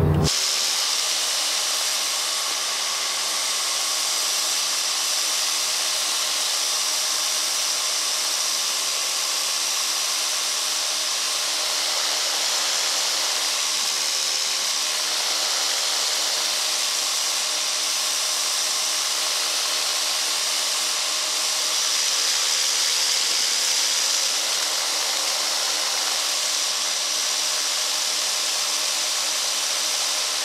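Steady rushing hiss of airflow over an onboard camera on a flexwing microlight trike in flight, with a faint drone of its engine underneath.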